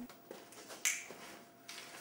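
A single sharp click or snap a little under a second in, with a few fainter soft clicks around it, over quiet room tone.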